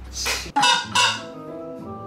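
Multi-pipe mouth party horn blown in a few short, loud honks in the first second, followed by quieter held tones, over background music.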